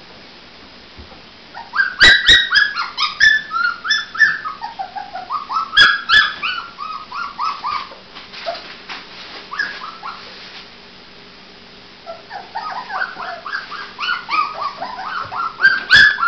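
Puppies whimpering and yelping: strings of short, high, falling cries, several a second. The cries start about two seconds in, die down around eight seconds, and start again near twelve seconds. A few sharp knocks come early in the first bout.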